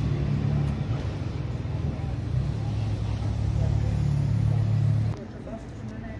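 A motor vehicle engine running with a steady low hum amid street noise, cut off abruptly about five seconds in.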